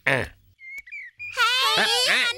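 A short falling vocal sound, then after a brief lull children's high-pitched voices start calling out excitedly, about a second and a half in.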